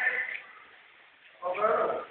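Two short, wavering voice calls, one right at the start and a louder one in the last half-second.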